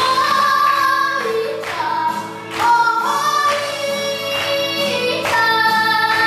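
A boy singing into a microphone over a recorded backing track, holding long notes of about a second each that step up and down in pitch.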